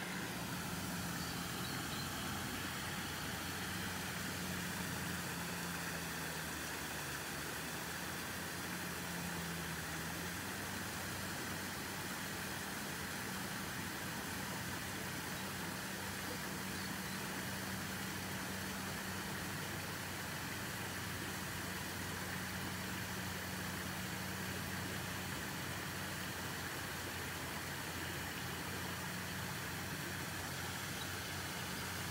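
Steady low motor hum under a constant hiss.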